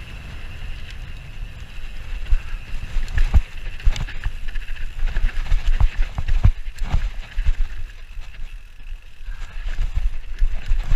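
Mountain bike descending a dirt woodland trail: the tyres rumble steadily over the ground, and the bike rattles and knocks sharply over bumps, most heavily about three to four seconds in and again around six to seven seconds.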